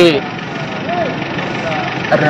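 A man's voice stops, then a pause filled with a steady, even hiss of outdoor background noise, with a faint short hum about a second in.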